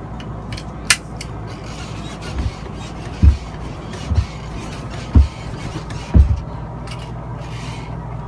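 Upholstered RV rocker chair rocking, giving a run of low thumps about a second apart that starts a couple of seconds in, over a steady low hum.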